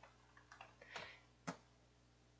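A few faint computer keyboard keystrokes, three soft clicks about half a second apart, against near silence.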